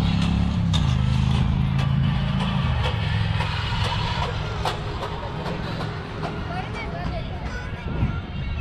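A steady low engine-like hum under crowd chatter; the hum drops away about three seconds in, leaving the chatter and scattered clicks and knocks.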